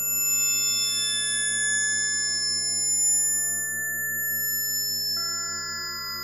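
Electronic music synthesized in SuperCollider: several pure sustained high tones overlap, entering and dying away in turn over a low, evenly pulsing drone. About five seconds in, a new cluster of tones enters with a short click.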